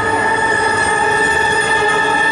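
An orchestra of woodwinds and brass playing live, holding a long sustained chord.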